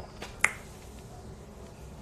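A single sharp click about half a second in, with a fainter tick just before it.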